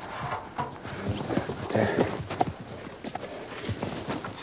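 Irregular knocks and scuffing on wooden planks as a person climbs into a wooden tree hut and sits down.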